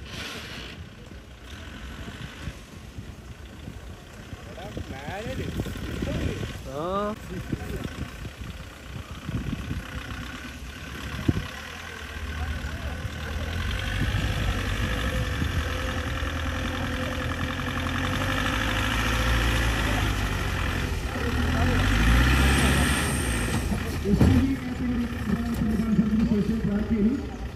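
A soft-top off-road jeep's engine working under load as it crawls through mud and up a dirt mound, building from about halfway and revving higher near the end.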